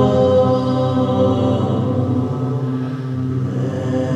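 Layered choir voices hold slow, sustained chords in a doom-style choral arrangement, dipping slightly in level about three seconds in.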